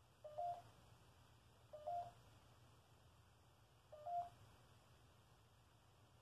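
Three short electronic beeps about two seconds apart, each a quick two-note chirp stepping up in pitch, over faint room hum.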